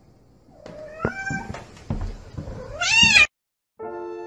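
A cat meowing: a couple of short meows about a second in, then a louder, longer meow that rises and falls in pitch about three seconds in and cuts off abruptly.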